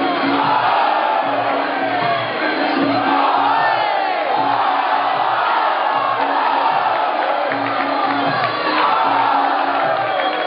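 Muay Thai fight music, a wavering, gliding reed-like melody over a steady repeating drum pattern, with a crowd shouting and cheering over it.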